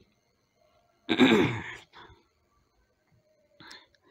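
A man clearing his throat once, about a second in, in a pause between silent stretches; a brief faint noise follows near the end.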